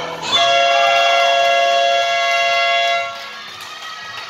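Basketball game buzzer sounding one loud, steady blast of about two and a half seconds that cuts off suddenly, marking the end of the quarter.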